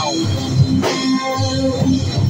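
Live rock band playing loudly: electric guitar, bass guitar and drum kit, with a strong drum hit roughly once a second.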